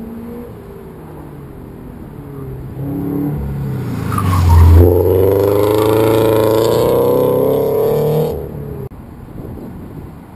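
A car's engine at an autocross builds up close by, loudest about four to five seconds in, then holds loud for a few seconds with its pitch slowly climbing as it accelerates, and cuts back about eight seconds in.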